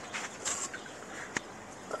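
Faint handling sounds of a cable being pulled by hand through a hole in an e-bike frame, with one light click a little past halfway.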